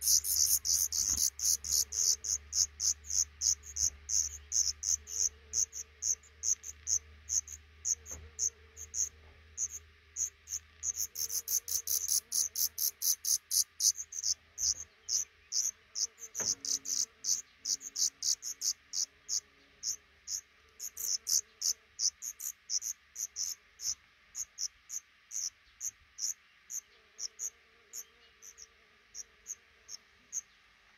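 Black redstart nestlings begging: a rapid run of thin, very high cheeps, about four a second, growing sparser and fainter toward the end once the adult has left the nest.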